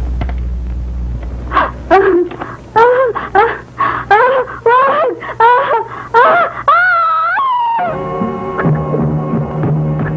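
A person's voice crying out in a quick series of short wails, about two a second, climbing in pitch and ending in one long drawn-out scream; then sustained music notes take over near the end.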